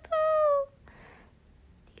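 A young woman's voice holding a high, drawn-out vowel for about half a second, sliding slightly down in pitch at the start, then quiet. It sounds enough like a meow that it could pass for a cat.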